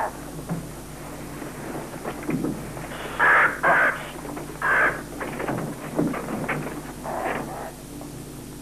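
A raven cawing: three loud, harsh calls in quick succession between about three and five seconds in, and a softer one near the end. A low steady hum runs underneath.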